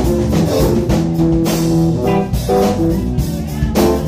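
Live band music: electric bass guitar and keyboards playing over a steady drum beat, instrumental without vocals.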